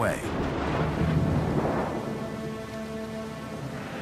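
Thunder rumbling with rain, swelling about a second in and then easing off.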